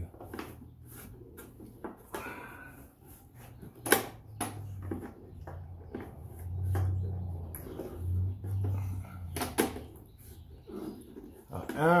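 A few sharp clicks and knocks of a hand tool against metal parts in a vehicle's cowl area, one about four seconds in and two close together near the end, with a man's low strained humming in between.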